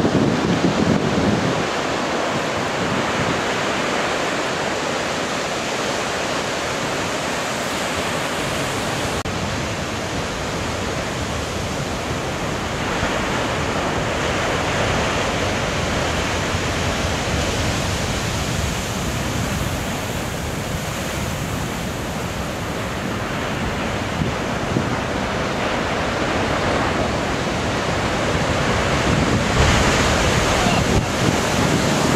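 Heavy Pacific surf breaking on a rocky shore: a steady, dense rush of breaking waves and churning whitewater. It grows louder near the end as a large wave slams into the rocks.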